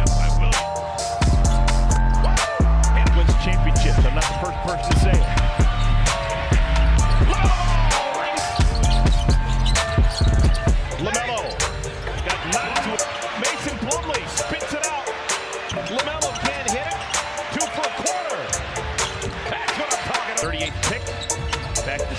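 Background music with a heavy bass beat for roughly the first half, then live game sound from an NBA arena: a basketball dribbling on the hardwood, sneakers squeaking and crowd noise.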